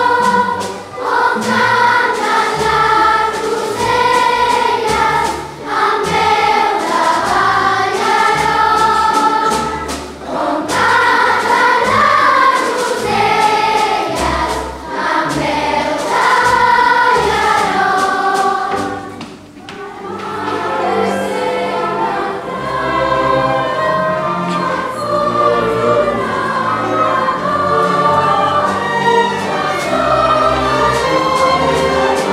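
A large children's choir singing, with an orchestra accompanying. The music briefly thins out about two-thirds of the way through, then resumes.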